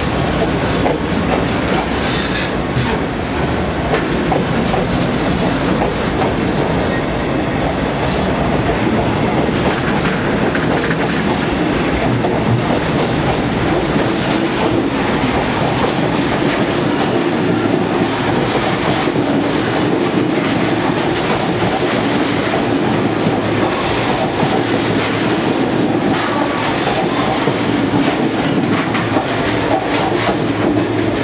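Loaded freight wagons rolling past at close range, their wheels clattering steadily over the rail joints.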